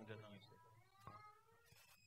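A man's spoken word ends at the start, then near silence, with a faint rising pitched sound.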